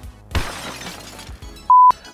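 A glass-shattering sound effect, a sudden crash that fades over about a second, followed near the end by a short, loud single-tone beep.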